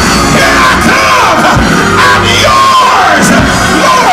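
A preacher shouting his sermon in a chanted, sing-song cadence, each phrase falling in pitch at its end, over sustained keyboard chords. This is the musical climax of a Black Pentecostal sermon.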